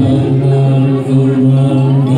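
A group of Theravada Buddhist monks chanting Pali in unison on a low, steady, near-monotone pitch.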